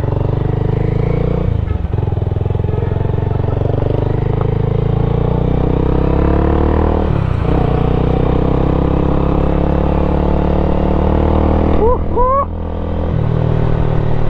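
Motorcycle engine running under way, its pitch climbing steadily as it pulls. The pitch drops back at gear changes, once near the start and again about halfway through. Near the end the throttle eases off and the engine note falls and quiets.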